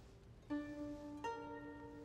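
Soft background music: two notes plucked on a string instrument, about three-quarters of a second apart, each ringing on after the pluck.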